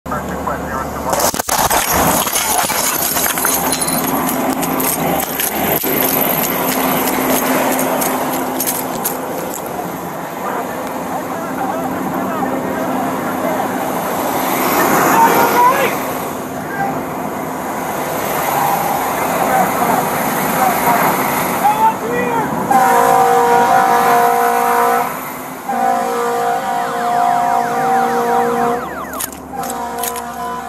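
A house exploding close by: one sudden, huge blast about a second in, then a long spell of loud noise as debris comes down and fire burns. From about two-thirds of the way through, a steady pitched alarm-like tone at two pitches sounds, breaking off briefly once.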